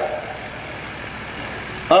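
A pause between a man's sentences, filled only by steady background noise. His voice tails off at the very start and comes back near the end.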